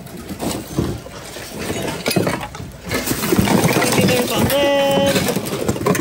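Voices of other people in a busy store mixed with the light clatter of plastic household items being handled in a bin; louder and busier from about halfway in, with one drawn-out pitched voice or note near the end.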